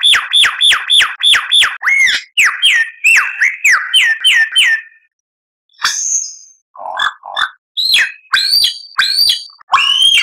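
Lyrebird song: a rapid run of whistled notes sweeping downward, about four to five a second, giving way to slower swooping notes. After a short pause near the middle, varied calls follow, among them rising notes and a couple of lower, rougher notes.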